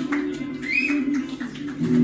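Live electric guitar and drum kit playing: sustained guitar chords over drum and cymbal hits, with a fuller chord coming in near the end.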